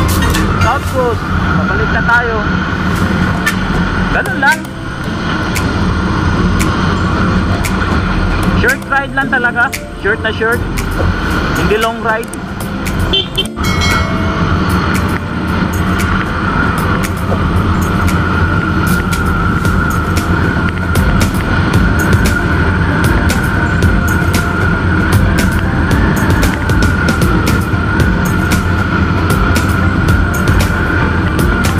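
Riding noise from a scooter on the road: wind buffeting and crackling on the camera microphone over road and tyre rumble, with a steady engine whine running through.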